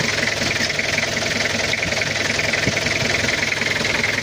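Turbocharged Toyota Kijang diesel engine idling steadily with an even diesel clatter, soft and not too loud or harsh: the engine running normally after its cylinder head gasket was replaced.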